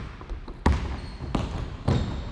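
A basketball being dribbled on a hardwood gym floor: three bounces a little over half a second apart.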